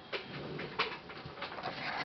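Handling noise from a njari mbira being set down: about three light knocks and clicks over a soft rustle.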